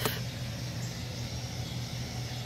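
A steady low engine-like hum under faint even background noise.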